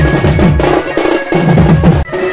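A band of two-headed barrel drums playing a fast, driving beat of about seven strokes a second, with a few high held notes above it. The drumming drops out briefly about a second in.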